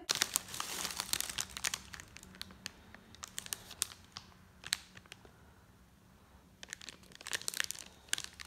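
Clear cellophane gift bag crinkling as it is handled, in sharp crackles: a dense run in the first two seconds, a few scattered ones in the middle, and another flurry near the end.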